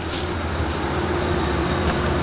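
Steady low rumble of busy highway traffic, with a faint steady hum running through it.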